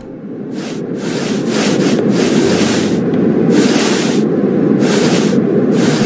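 Train running, a steady rumble with a hiss that swells and fades about once a second, fading in over the first second or so.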